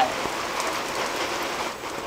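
Steady, even background hiss with no distinct events, like rain.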